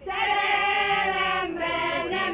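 A choir singing sustained notes, coming in suddenly, with a short break about one and a half seconds in.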